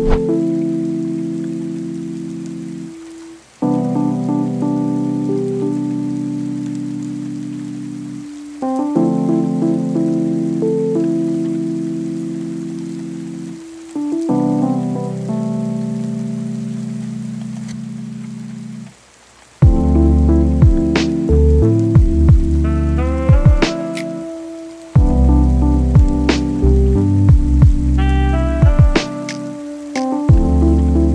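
Lo-fi hip hop track: held keyboard chords, each swelling in and fading over about five seconds, until drums and deep bass come in about twenty seconds in. A soft rain-like noise bed runs underneath.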